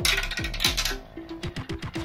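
Background music with a short repeating melody and falling bass notes, over plastic marbles rattling and clicking along plastic marble run track. A longer rattle comes in the first second, then a string of quick clicks.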